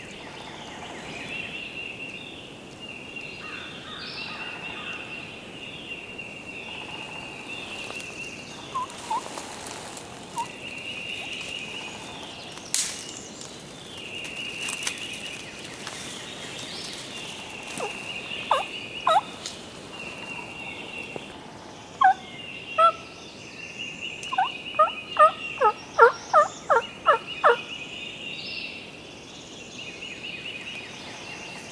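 Turkey calling in the woods: a few single notes, then near the end a quick run of about nine notes, each falling in pitch. A steady, pulsing insect chorus chirrs underneath.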